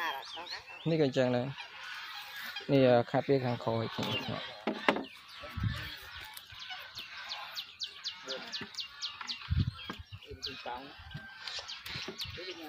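Domestic fowl calling, with a run of quick high calls, about five a second, in the middle, and louder, lower calls about one and three seconds in.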